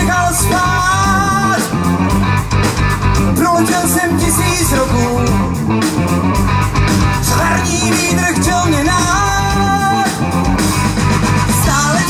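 Live rock band playing through a PA system: electric guitars, bass guitar and drum kit with a steady beat. Over it runs a melody of long, wavering held notes.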